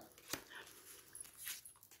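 Faint taps and clicks of tarot cards being handled and laid on a table, the sharpest about a third of a second in.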